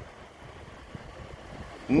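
Faint, steady outdoor background noise: a low rumble with a light hiss.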